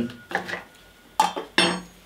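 Small metal spoon clinking against a whisky nosing glass: a light tap, then two sharp clinks with a brief high ring, about a second in and just after.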